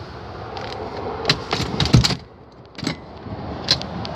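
Second-row seat of a Chevrolet Tahoe being folded and tumbled forward: a run of latch clicks and rattles, with a heavy thump about two seconds in, then a couple of single clicks.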